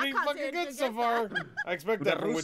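Speech: a high-pitched voice talking, the words unclear.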